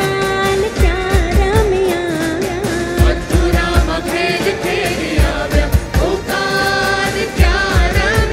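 Live Gujarati garba music: a lead vocalist sings a held, ornamented melody over a band with a steady, driving drum beat.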